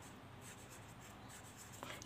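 Faint scratching of a marker pen writing on paper.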